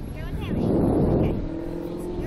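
Wind buffeting the microphone of an amusement ride's onboard camera as the Slingshot capsule swings through the air, a rumbling rush that swells about half a second in.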